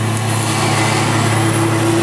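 Steady mechanical hum of a running motor: a low drone with a higher steady tone that grows a little louder toward the end.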